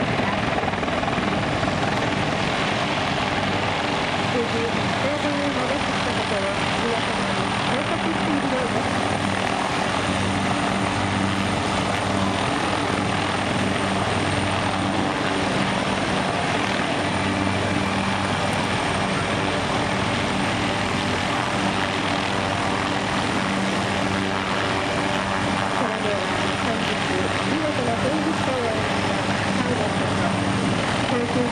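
A formation of several military helicopters hovering together, attack and light observation types among them. Their rotors and turbines make a continuous, steady drone with a low throb.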